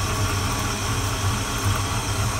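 1968 Ford Mustang's carbureted V8 idling steadily, shortly after a cold start.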